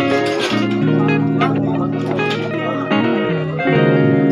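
Background music led by plucked guitar-like strings, with steady held notes, and a brief voice or noise near the start.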